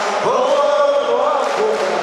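A man singing a chant-like line into a microphone over a PA system, one long held note rising in about a quarter second in and sustained for about a second.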